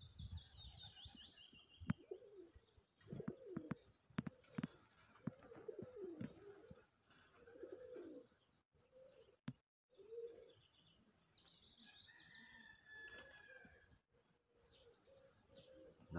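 Faint pigeon cooing, repeated low calls, with a small songbird's descending trill near the start and again about three-quarters of the way through.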